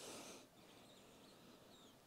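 Near silence, with a faint sniff near the start as a forearm freshly sprayed with perfume is smelled.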